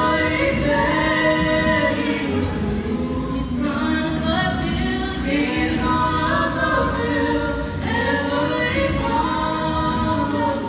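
Female vocal trio singing a gospel song into microphones, a lead voice with two background voices, holding long notes and moving between them.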